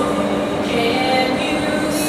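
A voice over a stadium public-address system, echoing and drawn out, over a steady low hum.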